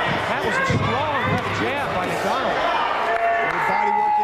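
Thudding impacts of gloved punches and kicks landing during a close-range kickboxing exchange, heard under shouting voices.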